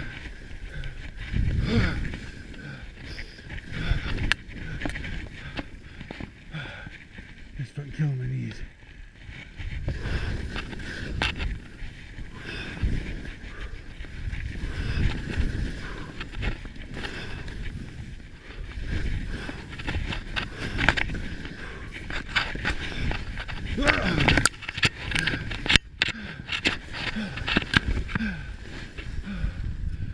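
Skis scraping and carving on firm snow through a series of steep turns, in uneven surges, with the skier's heavy breathing and grunts between them. A few sharp knocks come close together near the end.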